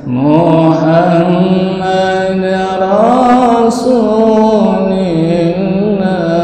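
A man chanting unaccompanied, one long melodic line of drawn-out notes that slowly rise and fall, after a short breath at the start.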